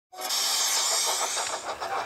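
Steam locomotive sound effect: a loud hiss of escaping steam for about a second, then quick, evenly spaced chuffing.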